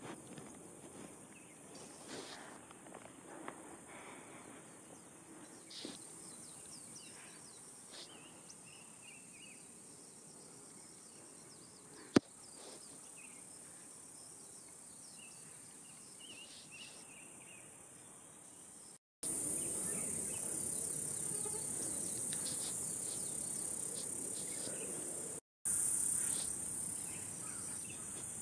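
Outdoor ambience of insects keeping up a steady high-pitched drone, faint at first with a few scattered short calls and one sharp click near the middle, then much louder for the last third after an abrupt jump in level.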